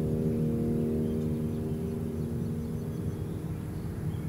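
A muffled piano chord, as if heard from another room, slowly dying away at the end of a classical piece, over a low steady rumble of street noise.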